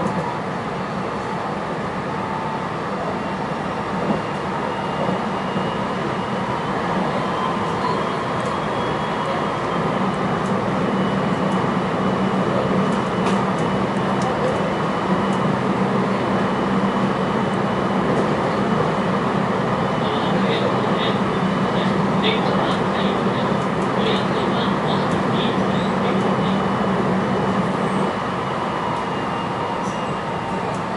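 Running noise inside the passenger car of a JR West 223 series 2000 electric train at speed: a steady rumble of wheels on rail with a steady humming tone. From about two-thirds of the way in, a run of light clicks joins it.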